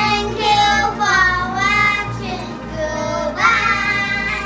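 Young children singing together over background music, drawn-out sung phrases of a goodbye line ('thank you for watching… goodbye').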